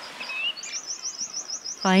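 A small songbird singing: a short rising whistle, then a fast trill of high chirps, about eight a second, running to the end. A voice begins speaking just before the end.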